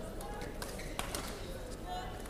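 Badminton rally: sharp racket-on-shuttlecock hits, the loudest right at the start and another about a second in, with short squeaks of sports shoes on the court floor over the murmur of voices in the hall.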